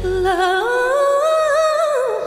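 Female vocalist singing without words and unaccompanied as the band cuts out about a third of a second in: her voice slides up to a long held note, then drops near the end.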